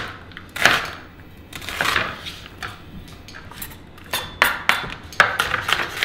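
Chef's knife dicing a red onion on a wooden chopping board: a few separate cuts striking the board, then a quicker run of chops in the last two seconds.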